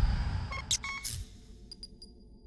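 Electronic logo sting for the beIN SPORTS end card: a deep low hit that fades away, then a few short high bleeps and clicks, with two last ticks near the end leaving a high tone ringing.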